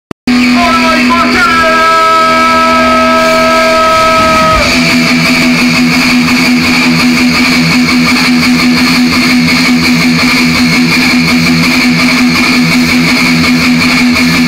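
Live thrash metal band, very loud and recorded near the limit of the microphone. A held, ringing guitar note sounds for the first few seconds, then the full band comes in with distorted guitars and drums about four and a half seconds in.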